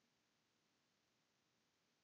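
Near silence: a faint even hiss, with no other sound.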